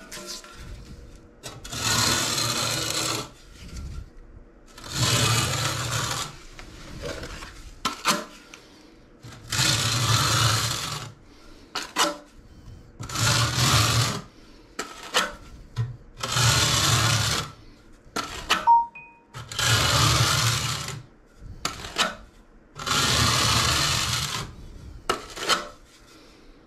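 Notched steel trowel scraping tile mortar onto a shower wall: seven rasping strokes of a second or so each, about every three seconds, with short clicks and taps between them.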